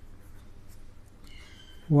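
Pen scratching across paper as a word is handwritten, faint. A man's voice begins just at the end.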